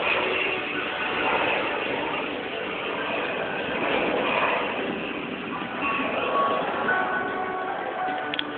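Steady vehicle noise with a few faint, brief tones heard now and then.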